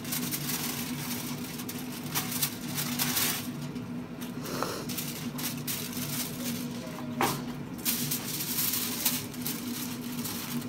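Aluminium foil being pulled off the roll, torn and crinkled as it is folded around a brisket, with sharp crackles and rustles over a steady low hum.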